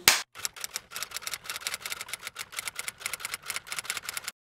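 Typewriter-style key-click sound effect: a rapid, even run of sharp clicks, about eight a second, as on-screen text is typed out letter by letter. It stops abruptly at the end. A brief loud transition hit comes first and is the loudest sound.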